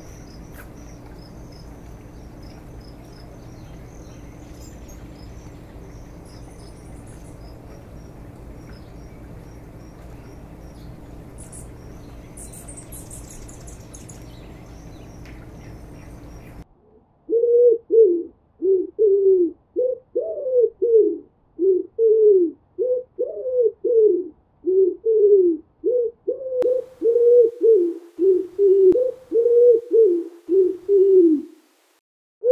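A steady low hum with faint, high chirps, then, a little over halfway through, an abrupt change to a rock pigeon cooing. Its short falling coos repeat about twice a second and are much louder than the hum.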